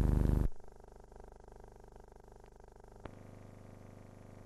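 Loud, steady, low electrical hum on a silent film's soundtrack that cuts off abruptly about half a second in, leaving a faint hum and hiss. A single sharp click comes a little after three seconds in.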